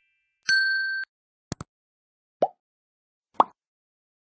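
Sound effects of an animated subscribe-button graphic: a short bright chime that cuts off sharply, then a quick mouse double-click, then two short bubbly pops, the first rising in pitch.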